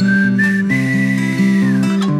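Music: a whistled melody climbing in small steps to a long held high note that slides down near the end, over a sustained instrumental accompaniment.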